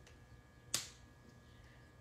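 A single sharp click from a felt-tip marker being handled on the table, about three-quarters of a second in, against quiet room tone.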